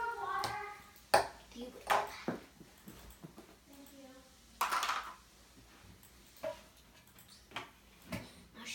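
Children's voices in short, partly distant snatches, with a few sharp knocks and clicks of small objects handled on a table; the loudest knock comes about a second in.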